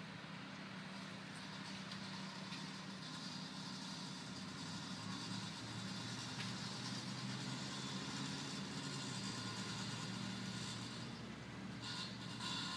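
A motor vehicle's engine running steadily nearby, a low hum that gets a little louder through the middle of the stretch.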